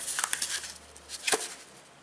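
Cardboard toilet-paper tube sliding over a roll of wrapping paper: dry scraping and rustling with a few small clicks, and one sharp tap about a second and a third in.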